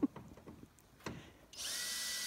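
Power drill starting up about one and a half seconds in and running steadily with a high whine, after a couple of short knocks.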